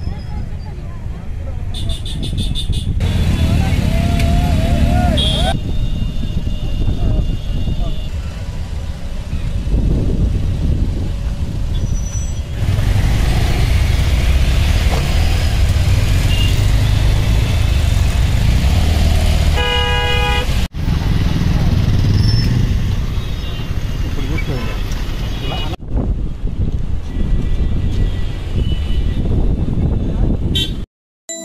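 Traffic noise from a congested road, with car and motorbike engines and a rumble underneath, and car horns honking briefly several times, loudest about twenty seconds in.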